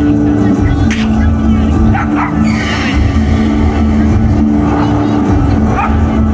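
A light show's soundtrack playing over outdoor loudspeakers: a low rumbling drone with steady held tones underneath. A few short rising sounds come through about two seconds in and again near the end.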